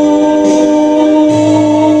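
A man holding one long, steady sung note into a microphone over a karaoke backing track of a slow ballad, with a low bass note returning about halfway through.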